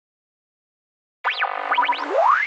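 Silence, then a little over a second in a cartoon-like musical sound effect starts: sliding pitch glides, one quick swoop up and down, three short upward sweeps and a brief held note, then a long rising glide.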